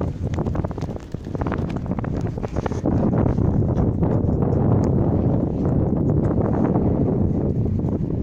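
Wind buffeting the camera's microphone in a steady low rumble, with scattered small ticks and knocks over it.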